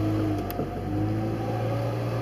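Car engine and road noise heard from inside the cabin as the car drives slowly: a steady low hum with a faint steady tone above it.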